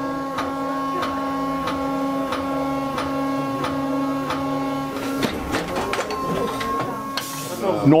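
Shoe-lasting machine running: a steady mechanical hum with evenly spaced clicks, about two and a half a second, which changes character about five seconds in. A short hiss comes near the end.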